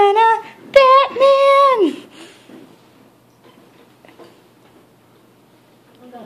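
A high, wordless voice sings or hums a few short stepped notes, then holds one note that slides down and stops about two seconds in. A single knock is heard just before the held note.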